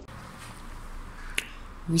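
A single sharp click about one and a half seconds in, over a faint steady hiss of background noise.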